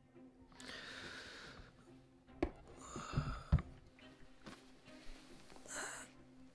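A person breathing out audibly, with a few dull low thumps around the middle, over faint background music.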